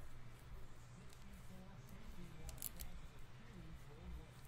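Chromium trading cards being flipped through a stack by hand: faint sliding and clicking, with a short cluster of sharper clicks about two and a half seconds in.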